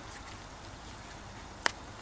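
One sharp click about two-thirds of the way through from the ear muffs' adjustable headband as an ear cup is slid along its wire adjuster, over a faint steady background hiss.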